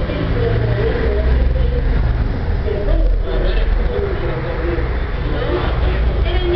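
Indistinct voices talking in the background over a steady low rumble.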